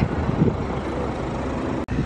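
Helicopter flying overhead, a steady rotor and engine rumble that cuts off abruptly near the end.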